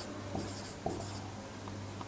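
Marker pen writing on a whiteboard: several short scratchy strokes with a couple of light taps as the tip touches down, under a faint steady low hum.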